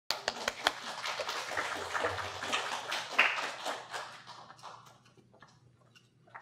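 Audience applauding, many hands clapping together, then dying away about four to five seconds in.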